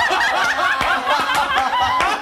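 A group of people laughing together, including a woman's high-pitched laugh.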